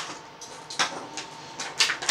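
Stiff plastic blister packaging from an action figure crinkling and crackling as it is handled, with a few sharp clicks, the loudest near the end.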